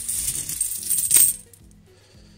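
Loose 50p coins jingling and clinking together as a hand rummages in a cloth bag, with one sharper clink about a second in, dying away after about a second and a half.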